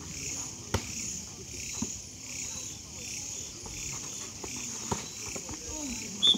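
Volleyball rally: a few sharp smacks of the ball being hit, the loudest about a second in, over a low murmur of spectators' voices. Crickets chirp steadily in a pulsing rhythm about twice a second.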